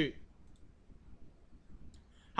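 A faint computer mouse click or two over quiet room tone, as the code is run.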